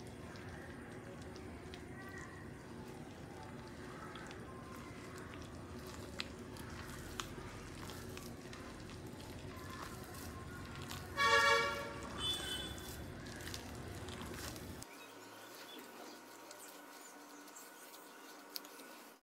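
Faint sound of a hand mixing rice flour into a wet ground paste in a glass bowl. A short high-pitched call cuts through once, about eleven seconds in.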